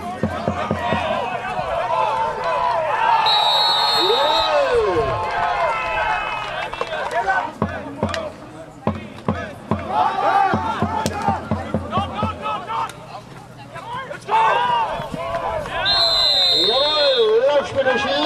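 Several voices shouting and calling out at a football game, with a referee's whistle blown twice, about three seconds in and again near the end, each held for over a second.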